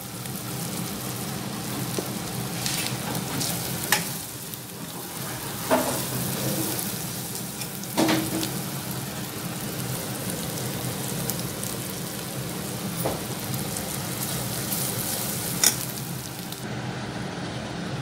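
Onion, green chilli and spice masala frying in a kadai on a gas stove, with a steady sizzle. A few sharp clicks sound over it at irregular intervals.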